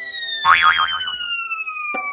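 Cartoon sound effects for a fall: a long whistle sliding slowly downward in pitch, with a wobbly boing about half a second in and a short knock near the end as the character lands.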